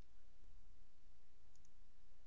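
Quiet room tone from a voice recording: a faint steady low hum and hiss, with a faint click about a second and a half in.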